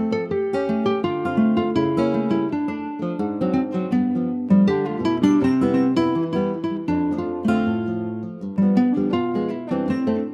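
Background music: a light calypso-style tune of quick plucked guitar notes over a steady beat.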